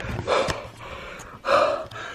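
A man gasping and breathing hard in excitement and relief, two breathy gasps about a second apart.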